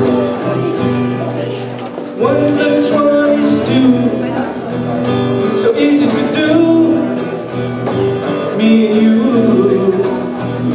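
A man singing a simple song while playing an acoustic guitar.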